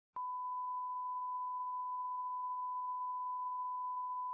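Bars-and-tone line-up signal: a steady, unwavering 1 kHz sine test tone that starts with a faint click just after the beginning. It is the reference tone that goes with colour bars, used to set audio levels before the programme.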